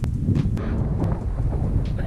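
Wind buffeting the camera microphone: a steady low rumble with a few faint ticks.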